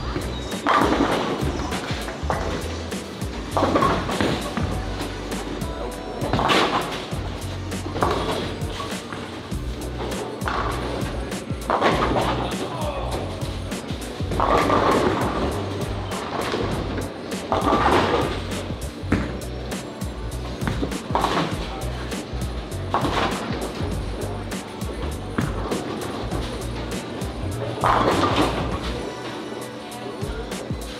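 Background music with a steady bass, laid over bowling-alley sound: bowling balls rolling down the lanes and crashing into pins, with a loud rise every few seconds.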